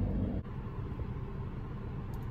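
Steady low rumble inside a car stopped with its engine idling. The level drops suddenly about half a second in, and the rumble carries on a little quieter.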